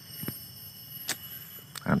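Quiet outdoor background with a steady high-pitched insect drone and three faint clicks spread through it; a man's voice starts right at the end.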